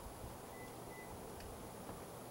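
Faint outdoor background noise with a thin steady high whine, broken by two brief faint high tones about half a second and a second in.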